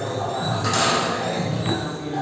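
An athlete's feet stepping and landing on a wooden plyo box during box jumps: a short scuffing rush just under a second in, then a knock near the end, over background music.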